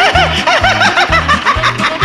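High-pitched, cartoonish puppet-character laughter: quick 'ha-ha' syllables several a second, over bouncy music with a repeating bass line.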